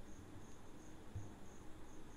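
Quiet room tone with a faint, high-pitched chirp repeating about three times a second.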